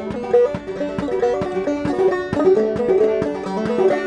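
Banjo played solo: a quick, steady run of plucked notes moving through a melody.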